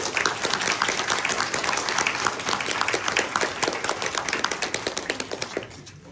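Audience applauding at the end of a piano piece, a dense patter of claps that dies away near the end.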